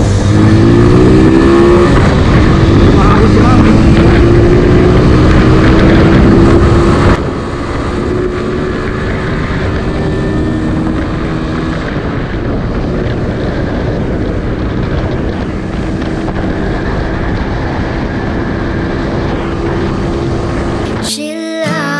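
Motorcycle engine accelerating from the rider's seat, its pitch rising over the first couple of seconds and then climbing more gradually, with heavy wind rumble on the microphone. About seven seconds in the overall level drops abruptly and the engine carries on at a steady cruise.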